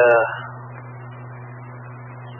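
A man's voice over a two-way radio trailing off in a drawn-out "uh", then a steady low hum with hiss on the open radio channel.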